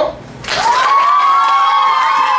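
A class of children cheering together for a classmate: a long, drawn-out shout from many young voices at once, starting about half a second in.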